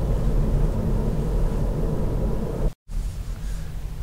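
Steady road and tyre rumble heard inside the cabin of a Kia e-Niro electric car driving along a village road, with no engine note. The sound cuts out completely for a split second about three-quarters of the way through, then resumes.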